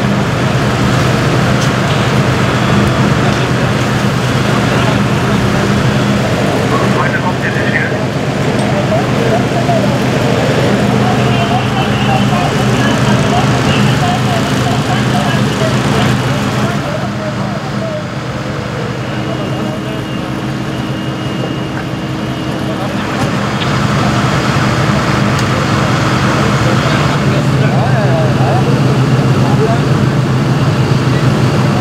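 Steady low hum of fire-service engines and pumps running at a fire scene, with firefighters' voices in the background.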